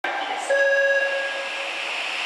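A steady electronic signal tone on a subway platform, held for about a second, over the steady hum of a standing Eidan 03 series train.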